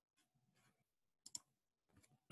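Near silence with a faint, quick double click of a computer mouse a little past the middle, plus a few fainter ticks before it.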